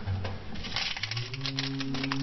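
A plastic M&M's candy bag crinkling as it is picked up off a metal locker floor, in a run of close, quick crackles from about half a second in.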